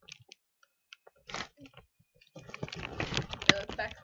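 Thin plastic water bottle crinkling and crackling in the hands as it is drunk from: a few faint clicks at first, then dense, loud crackling with sharp snaps from about two seconds in.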